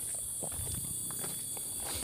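Footsteps on packed dirt and gravel, soft and irregular, over a steady high-pitched insect chorus.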